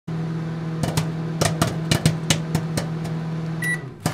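Microwave oven running with a steady hum, with irregular sharp clicks over it. The hum cuts off near the end with one short beep.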